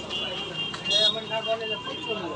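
People talking in the background, with a steady high-pitched tone running under the voices.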